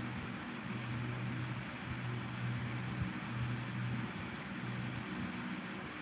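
A low steady hum that swells and fades every second or so, over an even background hiss.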